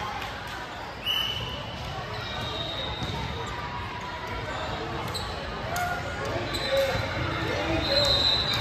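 Echoing sound of a gymnasium during a pause in a volleyball match: spectators talking, with a few short high squeaks and occasional soft thuds on the hardwood floor.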